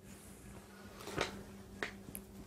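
Faint steady electrical hum with two small sharp clicks, one a little past a second in and one near the end.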